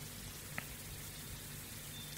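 Faint steady hiss of the recording's background noise, with one small click about half a second in.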